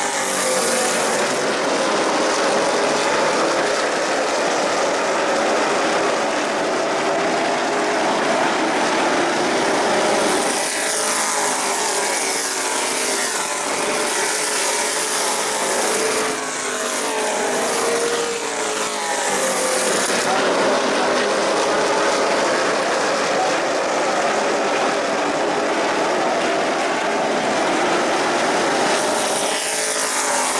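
A field of Pro Late Model stock car V8 engines running at racing speed around a short oval, loud and continuous, with the engine pitches rising and falling as cars pass.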